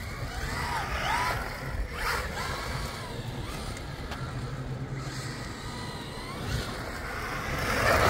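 Brushless electric motor of a Traxxas Ford Raptor-R RC truck whining up and down in quick bursts of throttle, several short rising-and-falling whines in the first couple of seconds and fainter ones after, over a steady background hiss.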